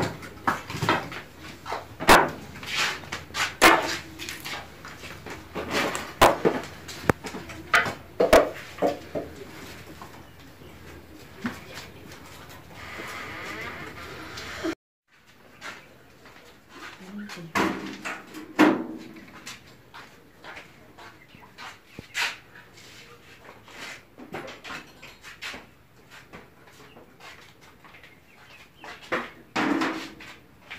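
Scattered knocks and clatter: wood laid onto a small cooking fire, then, after a short silence about halfway, a large metal tray and dishes set down on a low stand, with a few brief voices.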